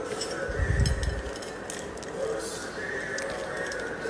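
Dry, crisp sev being scooped from a bowl by hand and sprinkled over puris: light crackly rustling and small scattered clicks, with a dull low bump about half a second to a second in.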